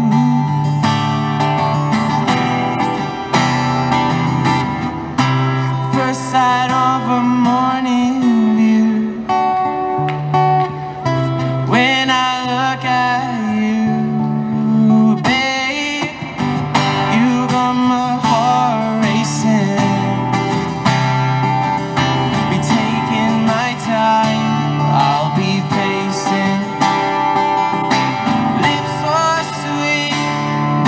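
A man singing while strumming an acoustic guitar: a pop-ballad verse with steady chords under a sustained, wavering vocal line.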